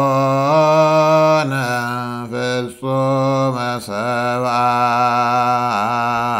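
A man chanting a Ge'ez hymn solo in Ethiopian Orthodox zema style, holding long notes with small wavering ornaments and a few short breaks for breath.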